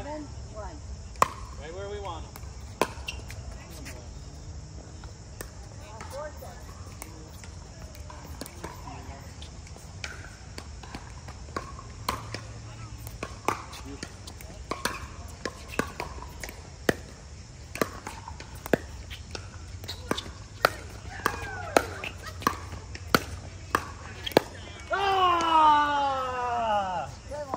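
Sharp pops of pickleball paddles striking the plastic ball during a rally, coming about once a second through the second half. A voice calls out loudly just before the end.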